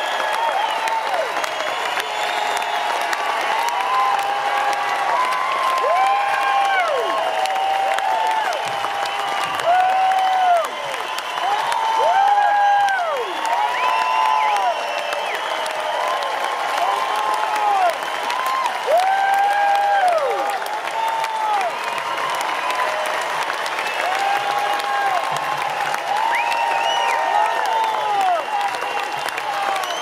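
Large concert crowd applauding and cheering after a song ends, with steady clapping and many overlapping shouted cheers rising and falling over it.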